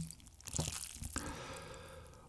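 Faint, wet eating sounds from a bowl of spicy cold mixed noodles (bibim naengmyeon) as they are worked with chopsticks and chewed.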